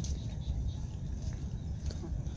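Low, uneven rumble on the camera's microphone while it is carried along on foot, over faint outdoor background.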